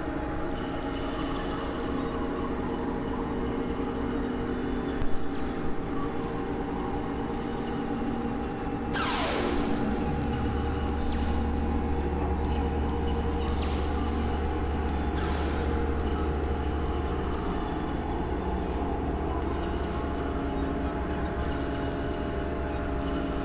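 Layered experimental electronic drones: several sustained steady tones stacked together. About nine seconds in a sweep glides quickly down from high to low, and just after it a deep bass drone comes in and holds.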